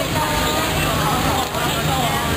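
Several people talking at once over a steady low hum from an idling vehicle engine.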